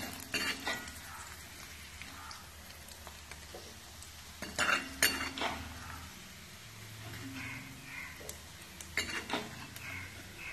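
Steel ladle clinking and scraping against a black kadai while fried fish pieces are lifted out of hot oil, over a faint steady sizzle. The clinks come in clusters: near the start, in the middle, and near the end.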